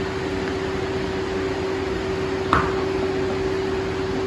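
Electric barn fans running with a steady hum at one pitch, and a single short knock about two and a half seconds in.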